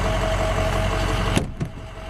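Steady hum of an idling 6.0-litre Power Stroke turbo-diesel V8 with a thin whine over it. A sharp click comes about one and a half seconds in as the rear seat mechanism is worked, and after it the hiss and whine drop away.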